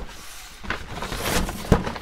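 Brown-paper mailing bag crinkling and rustling as it is gripped and lifted off a workbench by one hand, with a sharp knock about three-quarters of the way through.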